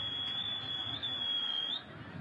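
A steady high-pitched whistle from the public-address system at a rally microphone, feedback ringing over the background noise in a pause of the speech. It bends up slightly and cuts off near the end.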